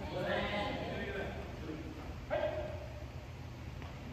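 Badminton players' voices calling out across a gymnasium, with a sudden loud shout a little over two seconds in. A steady low hum runs underneath, and there is a light tap near the end.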